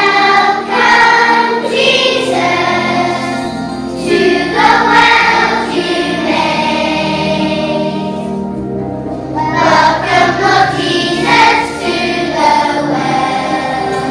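A group of children singing together, voices amplified through a stage microphone, with a steady low accompaniment underneath.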